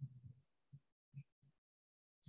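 Near silence, broken by a few faint, brief low blips in the first second and a half.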